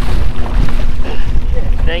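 Heavy wind rumble buffeting the microphone, with a faint steady hum underneath.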